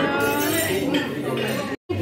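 Restaurant dining-room background of voices with tableware clinking, cut off abruptly by a brief silence near the end.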